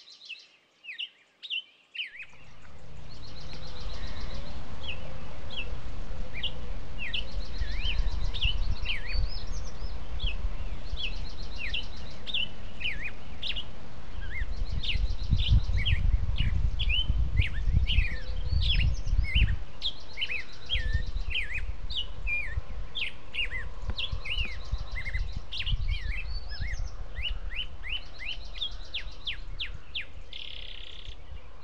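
Songbirds singing continuously, with many quick rising and falling chirps and repeated trills. Under them, from about two seconds in, a steady low rumble fades up and carries on.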